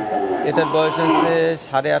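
A man's voice, talking or drawing out a word, that the transcript did not write down.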